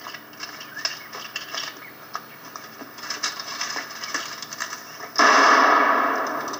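Film soundtrack played through a TV: faint scattered rustles and clicks, then a sudden loud, noisy burst about five seconds in that fades over a second or so.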